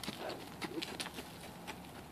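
Horse's hooves on dry dirt: a few soft, irregular footfalls that grow fainter as the horse walks away.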